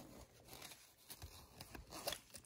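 Near silence, with faint rustles and light clicks of a fabric toiletry pouch and its contents being handled.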